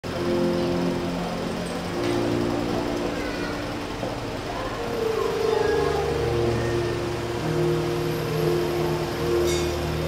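Soft sustained keyboard chords, each held for one to three seconds before moving to the next, with no beat.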